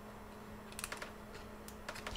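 A few faint plastic clicks as nylon zip ties are worked through their locking heads and a plastic battery door, a couple together about halfway through and two more near the end, over a faint steady hum.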